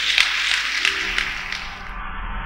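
Congregation clapping, fading away over the two seconds.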